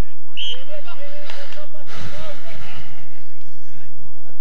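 Faint, distant voices of players and onlookers calling out across an open field, with a low rumble of wind on the microphone about halfway through.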